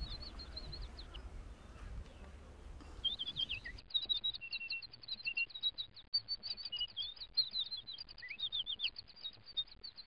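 Small birds chirping: many quick, high, repeated chirps, sparse at first and then busy and continuous from about three seconds in.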